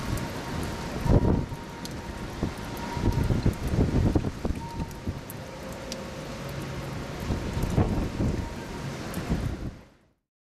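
Steady rain and wind outdoors, with several heavy gusts buffeting the microphone. The sound fades out near the end.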